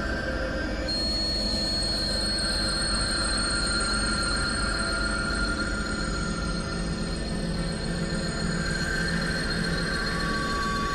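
Experimental synthesizer drone music: a dense, noisy low drone under several steady, high, squealing tones. A piercing high tone enters about a second in and holds.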